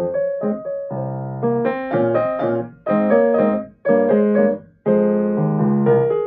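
Grand piano played as a four-hand duet: full chords in short phrases, each held and then cut off by a brief break.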